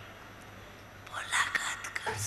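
Faint, soft speech that sounds close to a whisper, starting about a second in after a moment of low hiss.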